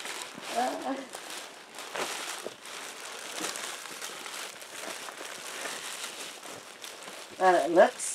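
Clear plastic wrapping crinkling and rustling steadily as a new air mattress is handled and pulled out of its bag. A woman's voice comes in briefly just after the start and more loudly near the end.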